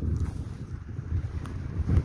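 Wind buffeting the camera's microphone, a steady low rumble.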